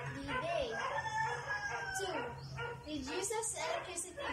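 A rooster crowing, its long drawn-out final note held for about a second.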